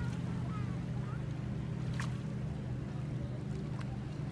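A steady low hum under a faint, even outdoor noise, with a couple of faint clicks, one about two seconds in and one near the end.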